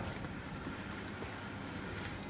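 Steady background room noise: an even hiss with a faint hum, and no distinct event.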